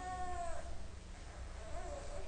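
A baby's long, high wail that drops in pitch and stops about half a second in, followed by softer fussing sounds.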